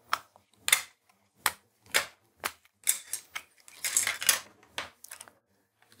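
Plastic Raspberry Pi case parts being handled and pushed together by hand: a string of separate sharp clicks and taps, about a dozen, irregularly spaced.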